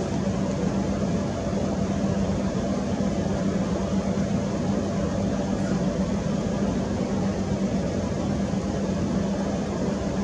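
A steady mechanical hum: an even rushing noise with a constant low drone that does not change.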